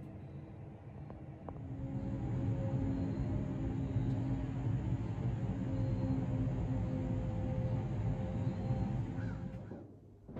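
Background music: a sustained, eerie drone with held tones that swells in about two seconds in and cuts off just before the end.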